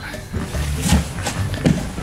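Hollow knocks of large empty cardboard boxes being handled and set down, two of them under a second apart, over background music.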